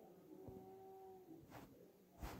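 Near silence, with a faint steady tone lasting about a second.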